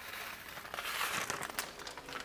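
Faint crinkling and scattered small ticks as a pinch of salt is added to a blender jar of eggs and bananas.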